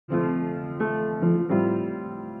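Slow piano music: four notes or chords struck in turn, the last left ringing and slowly fading.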